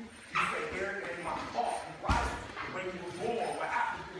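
Indistinct voices and short vocal sounds from people grappling in a gym. There is one thump about two seconds in, typical of a body landing on a wrestling mat.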